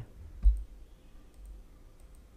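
A soft, low thump about half a second in, then a few faint clicks over quiet room tone.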